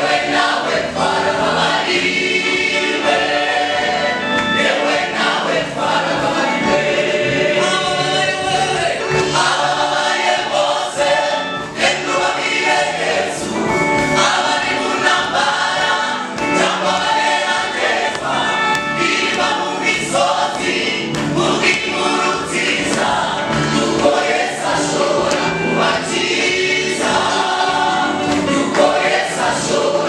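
Mixed church choir of women and men singing a gospel song together into microphones.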